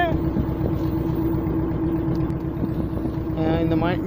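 Fishing boat's engine running steadily with an even hum, over wind and water rush as the boat is under way.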